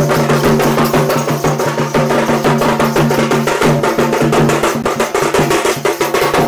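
Two-headed barrel drum (dhol) beaten with a stick and hand in a fast, even rhythm of sharp strokes, playing for the dance.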